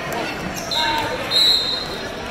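Wrestling shoes squeaking on the mat, two short high squeaks about a second apart, the second louder, over spectators' voices in the gym.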